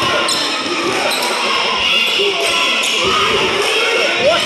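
A basketball being dribbled on a hard gym floor: sharp bounces ringing in a large hall over the murmur of spectators' voices.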